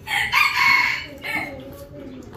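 A rooster crowing once: a single high call lasting about a second, fading away soon after it peaks.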